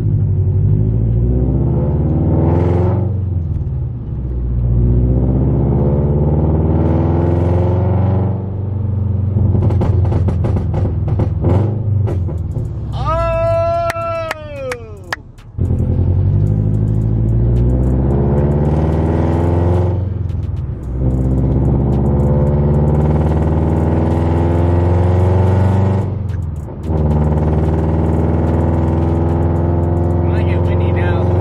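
Scion FR-S's 2.0-litre flat-four, heard from inside the cabin through a Tomei titanium header and muffler exhaust, pulling up through the gears several times, its pitch climbing and dropping at each shift. Crackles and pops on lift-off come in the middle, from the pops-and-bangs tune. A brief high tone rises and falls over them.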